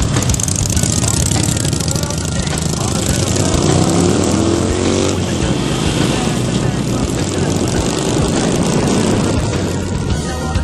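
Harley-Davidson V-twin motorcycles riding in a group, with a steady rushing noise throughout and an engine revving up in pitch between about three and five seconds in as a bike accelerates.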